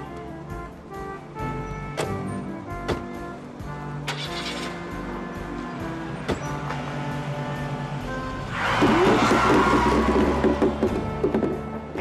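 Background music with held notes. About eight and a half seconds in, a car pulls away at speed, a loud rush of engine and tyre noise lasting about three seconds.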